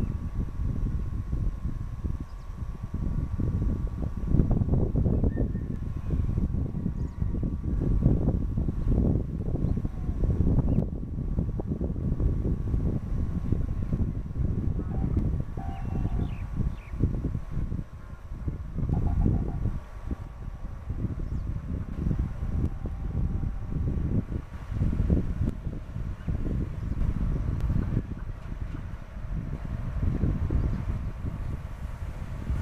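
Indian Railways WAM-4 electric locomotive hauling a passenger train as it approaches, heard as a low rumble largely covered by wind buffeting the microphone. A faint steady high tone runs underneath.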